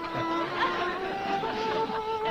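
Solo violin playing a slow melody in long held notes with vibrato, moving to a new note every second or so.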